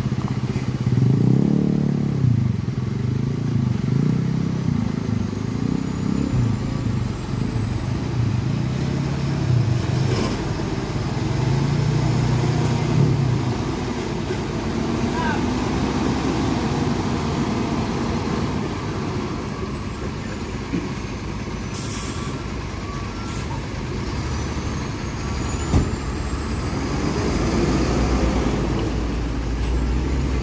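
Hino heavy truck's diesel engine working through deep mud, its note rising and falling under load through the first half, then settling lower and steadier. A short hiss comes about twenty-two seconds in.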